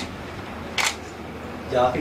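A single short camera shutter click a little under a second in, over low room noise. A man's voice starts near the end.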